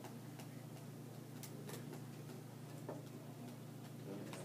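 Light, scattered ticks and clicks, irregularly spaced, over a steady low hum in a quiet room.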